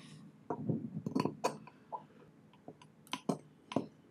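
Light clicks and clinks of a plastic demonstrator fountain pen being handled against a glass ink bottle while it is readied for vacuum filling. There are about ten short, irregular taps.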